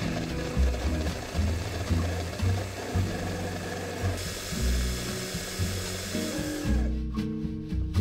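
Electric mini chopper running, its blade grinding flour, sugar and butter into streusel crumbs. The motor noise turns brighter and harsher about four seconds in and stops near the end.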